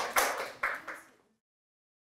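A small audience applauding with quick, even claps that fade and cut off about a second in.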